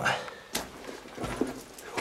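Footsteps on a gritty stone and dirt floor, two distinct steps about three quarters of a second apart.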